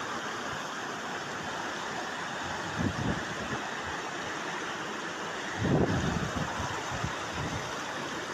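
A mudflow's churning floodwater rushing steadily past, heard through a phone microphone. Two short, louder low rumbles come about three and six seconds in.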